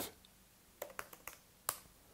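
A few keystrokes on a laptop keyboard: about five short, light clicks over roughly a second, the last one the sharpest.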